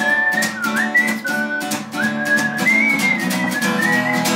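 Acoustic guitar strummed in a steady rhythm, with a whistled melody of gliding and stepping notes carried over it.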